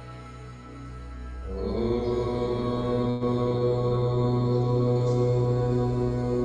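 Recorded devotional chanting of a Sanskrit mantra over a steady drone; about one and a half seconds in, the chanting comes in louder on a long held note.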